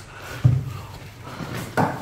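A backpack being handled: a dull thump about half a second in and another knock near the end, with faint rustling between.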